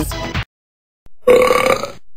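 A single loud, rough burp from a cartoon character, starting about a second in and lasting well under a second.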